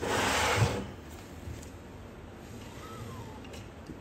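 A short rubbing, sliding scrape of hands moving parts against the metal frame and base of a 3D printer, lasting just under a second at the start, then little more than faint background.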